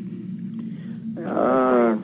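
A person's voice holding one drawn-out vowel-like sound for under a second near the end, over a low steady hum.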